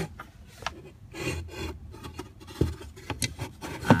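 Plastic glove-compartment shelf of a Lexus IS250 being fitted back into place: irregular plastic scraping and rubbing with a few light knocks.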